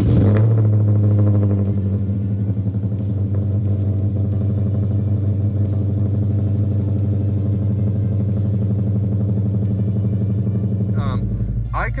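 2016 Dodge Charger R/T's cammed 5.7 Hemi V8 with headers, running on E85, firing up with a brief louder flare and then settling into a steady idle through its exhaust. A deeper rumble joins about a second before the end.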